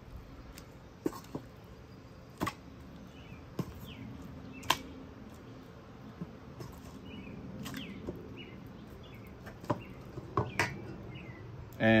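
A fork clinking now and then against a stainless steel mixing bowl as a floured steak is worked through egg wash, a handful of sharp, irregular clicks. Faint bird chirps sound in the background.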